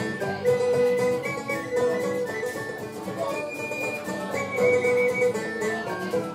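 Instrumental break of a folk song: a tin whistle plays the melody in held notes over fiddle, banjo and strummed acoustic guitar.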